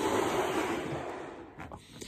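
A long breath blown into a yellow latex balloon, inflating it: a steady rush of air that fades out after about a second and a half.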